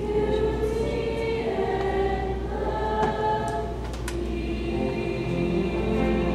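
A mixed-voice choir singing sustained chords, moving to a new chord about four seconds in.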